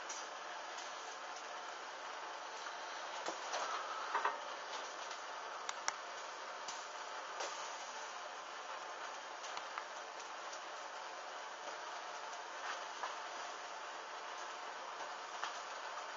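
Small flames burning along the hems of a synthetic fabric thong: a faint steady hiss with scattered small crackles and pops, and a short run of louder ones about four seconds in.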